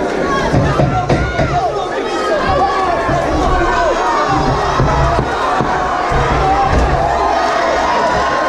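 Boxing crowd shouting and cheering the fighters on, many voices calling out over each other.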